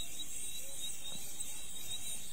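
A steady high-pitched hiss with a faint thin whine, no words.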